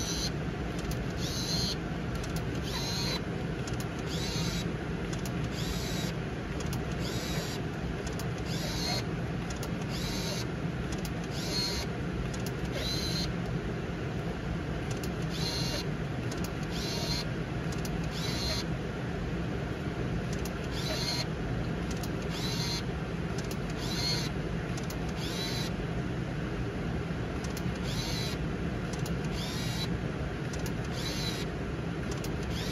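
Seagull SC198 compact film camera being fired frame after frame: each press gives a shutter click and a short whirr as the motor winds on to the next frame, about every one and a half seconds. The roll is being shot through to its end so that the camera will rewind the film by itself.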